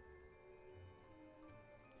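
Near silence with faint background music of soft, held notes.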